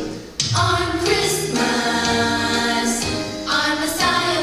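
A group of voices singing a song with music, like a choir. The sound drops briefly just after the start, then the singing comes back in full.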